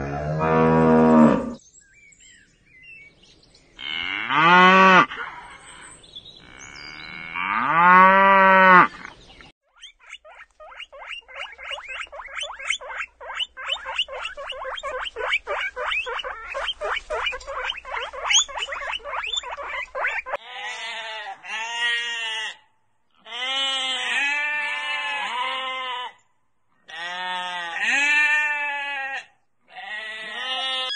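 Cow mooing in long calls that rise and fall, twice in the first nine seconds. Then a rapid run of short, high squeaky calls, several a second, from guinea pigs for about ten seconds, followed by repeated bleating calls from sheep.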